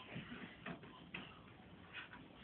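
Faint clicks and taps from the open door of a front-loading washing machine as a toddler handles it, two short clicks about half a second apart near the middle.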